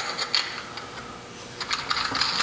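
Small chrome air inlet filter being screwed by hand onto an air compressor's intake: light metallic clicks and scraping of the threads, a cluster at the start and another near the end.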